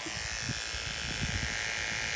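Wahl electric horse clippers running steadily, trimming the hairs that stick out of a horse's folded ear.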